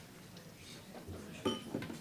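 A sharp clink with a short ringing tone about one and a half seconds in, followed by a few lighter knocks: tableware being handled on a table. Faint voices murmur underneath.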